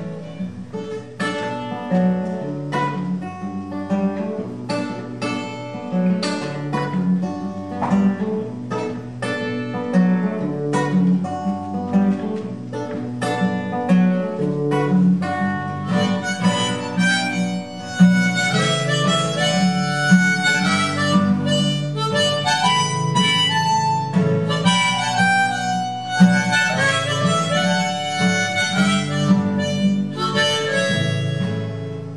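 Live acoustic guitar strumming steadily under a harmonica melody of long held notes, an instrumental break between sung verses.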